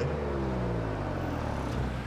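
Kia car engine pulling hard under acceleration, its note falling steadily in pitch over a steady low rumble.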